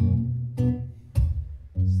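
Acoustic guitar strummed in a steady rhythm, a chord about every half second left to ring.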